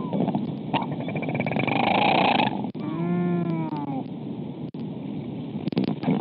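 Royal albatross call at the nest over wind noise on the microphone: a louder noisy rush near two seconds in, then a clear call about three seconds in that rises and falls in pitch for about a second.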